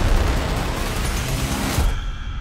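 Action-movie trailer soundtrack: music mixed with a dense, loud low rumble of explosion and fire sound effects. Near the end it cuts off suddenly after a short hit.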